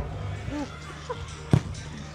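Background voices over a steady music bed, with one sharp thump about one and a half seconds in.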